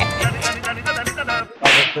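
Background music with a man's vocal line over a steady bass, then a short, loud noise burst near the end, an edited-in whip-like swish sound effect.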